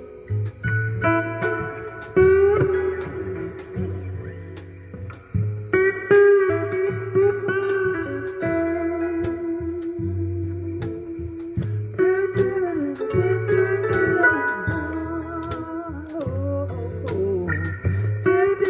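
Acoustic guitar playing an instrumental passage of plucked notes over a bass line, with light percussion.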